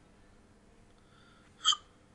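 Near silence, then, about a second and a half in, a single short, sharp mouth noise from the narrator just before he speaks again.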